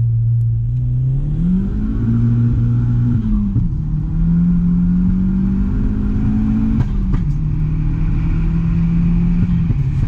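Audi S3-replica's turbocharged 1.8-litre four-cylinder engine pulling away through the gears, heard from inside the car. The engine note climbs and holds, drops at a gear change about three seconds in, climbs again, and drops at a second change about seven seconds in, where a few sharp clicks sound. It then runs at a steady note.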